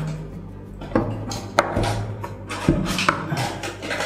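Background music with a few sharp clicks and knocks, and some rubbing, from a moulded plastic packaging tray and a bulb camera being handled on a table.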